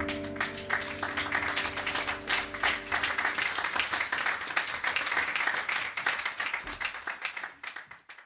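Audience applauding as the band's final piano chord rings out and dies away over the first few seconds; the clapping thins out near the end.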